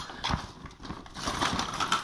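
Spent tear-gas grenade casings being handled and moved about on a tiled floor: a run of irregular clicks and knocks over rustling.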